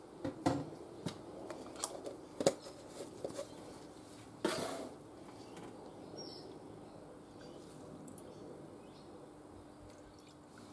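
Metal spoon and silicone spatula knocking lightly against a glass measuring jug while green mica is stirred into melted oils: several light knocks over the first few seconds, a brief louder noise about halfway, then quiet stirring.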